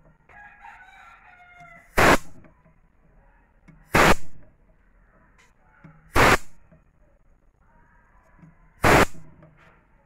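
A rooster crowing twice in the background. Four loud, sharp bursts of noise about two seconds apart are louder than the crowing.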